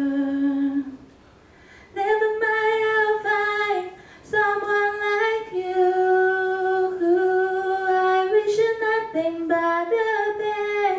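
A teenage girl singing solo into a handheld microphone, with no accompaniment, holding long steady notes. There is a breath pause about a second in and a shorter one at about four seconds.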